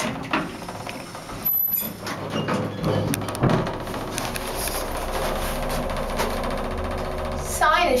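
Original 1980s Silver State hydraulic elevator setting off upward: clicks and knocks in the first few seconds as the doors close, then the hydraulic pump motor starts up and runs with a steady hum as the car rises.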